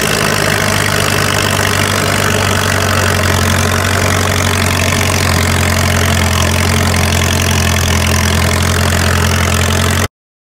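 Old crawler bulldozer's engine running loud and steady, heard close up from the machine itself as it travels along a gravel road.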